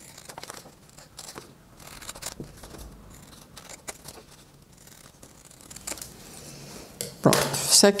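Scissors cutting through stiff brown kraft paper: a run of short, irregular snips with some rustling of the paper as it is turned.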